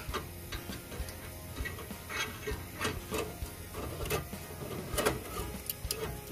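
Irregular metal clinks and clicks, about ten in all and the loudest about five seconds in, as the small charcoal grill and its grates are handled, over background music.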